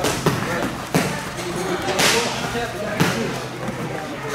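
Busy gym: overlapping background voices with sharp thuds and slams about once a second.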